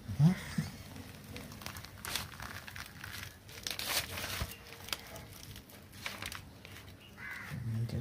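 Fibrous orange pulp of a ripe palmyra palm fruit being torn and pulled away from its skin by hand: irregular crackling and rustling of the stringy fibres.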